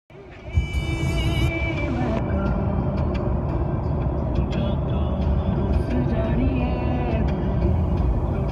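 Steady road and engine rumble heard inside a moving car's cabin.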